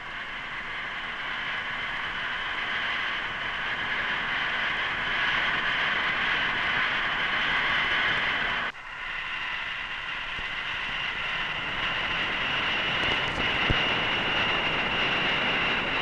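Steady rushing hiss of compressed air blowing out through a 1/20-scale Avrocar hovering model's peripheral jet, fed by a hose. It cuts out abruptly for an instant about nine seconds in, then carries on.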